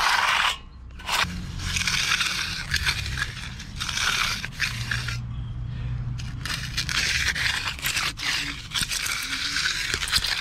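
Steel hand edger scraping along the edge of wet concrete beside a wooden form, in a run of strokes with short pauses. The concrete is still a little too wet for a clean final pass.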